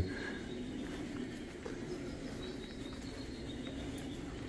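Steady low background hum of an indoor room, with no distinct sounds standing out.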